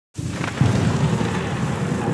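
Steady hiss of rain with a low rumble of thunder, starting suddenly just after the start, used as an atmospheric intro ahead of the beat.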